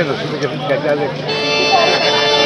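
Chatter of voices, then about a second and a half in an accordion starts sounding a held chord as the folk dance music begins.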